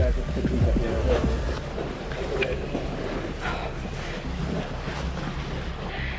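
Wind buffeting the microphone over open sea, a low rumble with the wash of waves beneath, strongest in the first two seconds. A few faint knocks come from climbing a steel stair.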